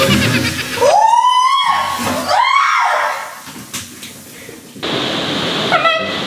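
A girl screams twice, two long rising-and-falling shrieks, startled as the kitchen sink drain, rigged with Coke and baking soda, foams up. A steady backing of music follows near the end.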